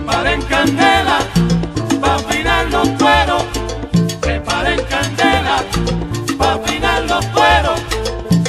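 Salsa band recording playing an instrumental passage, with a bass line moving under melodic lines and percussion.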